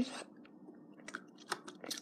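Faint clicks and taps of small hard plastic toy parts being handled: a plastic display dome set down onto its plastic base, with a few scattered taps, most in the second half.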